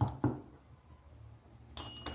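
Digital multimeter's continuity beeper starts a steady high-pitched beep near the end as the probes bridge pins 8 and 5 of the unpowered timer relay. The beep shows that the normally closed contact is conducting.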